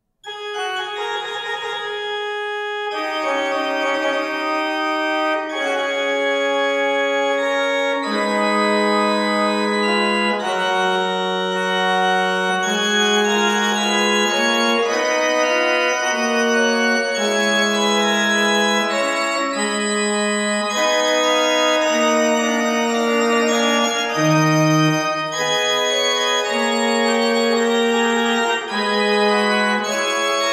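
The Renaissance pipe organ of Sønderborg Castle chapel playing a 16th–17th century piece in several sustained, interweaving voices. It begins suddenly, and lower notes join about eight seconds in, filling out the texture.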